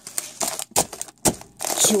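Plastic bags of one-minute oats crinkling as they are picked up and handled, in several short bursts.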